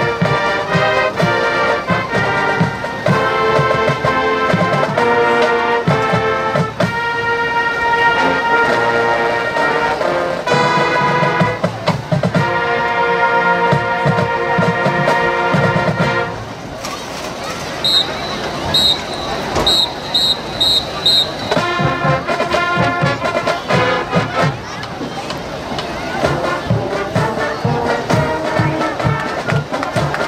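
High school marching band playing brass and percussion: long held brass chords, then about halfway through a quieter stretch with short high ringing notes, then the full band again over a steady drum beat.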